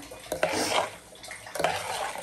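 Steel spoon stirring thin mint-and-chilli pani puri water in a metal pot: the liquid swishes and sloshes, with a couple of clinks of the spoon against the pot.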